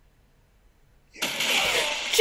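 Near silence, then about a second in a sudden loud rushing noise from the TV episode's soundtrack, held steady to the end.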